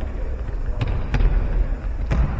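Futsal ball being kicked on an indoor court: two sharp knocks about a second in, roughly a third of a second apart, over a steady low rumble of the hall.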